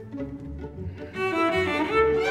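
String orchestra playing, with cellos bowing sustained low notes; about a second in, higher strings join and the music grows louder.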